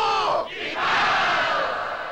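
Men shouting a battle cry: one long held shout whose pitch drops as it breaks off about half a second in, then a second shout that trails away slowly like an echo.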